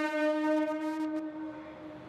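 Montreal Metro train in the station giving one steady pitched tone that holds for about a second and a half, then fades.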